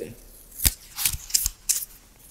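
Paper pages of a book being handled and turned close to the microphone: a few sharp crackles and taps over about a second, the loudest near the start.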